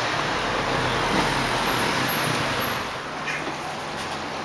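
Street traffic: a motor vehicle's engine and tyres passing close by, easing off about three seconds in.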